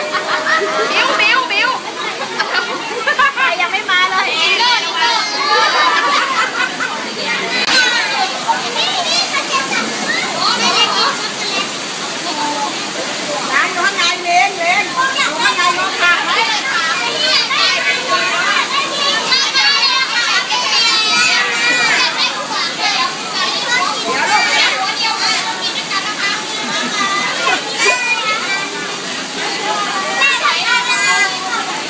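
A crowd of young children chattering all at once, a loud, continuous hubbub of overlapping voices with no pauses.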